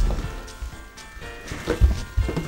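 Background music with steady sustained tones, with a low thump at the start and another near the end.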